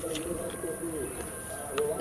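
A dove cooing softly in low tones in the background, over faint clicks of a guava being bitten and chewed.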